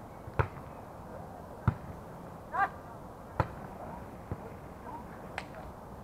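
A volleyball struck by players' hands and forearms during a rally on sand: several sharp, short hits at uneven intervals of one to two seconds. A player gives a brief call about halfway through.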